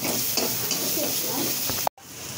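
A thick masala sizzling as it fries in a black kadai, with a spatula stirring and scraping through it. The sound cuts out abruptly for a moment near the end.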